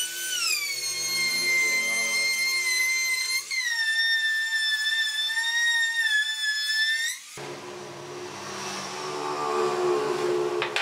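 Handheld electric trim router running at high speed, a loud high whine whose pitch dips as the bit bites into the edge of the pine board. About seven seconds in it cuts off suddenly and a lower, rougher hum takes over.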